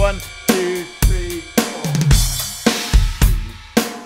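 Electronic drum kit playing a slow groove of bass drum, snare and hi-hat, opening on a crash cymbal on beat one that lands just after a quick four-stroke 32nd-note single-stroke burst. There is a second cymbal wash about two seconds in, and the last stroke rings out near the end.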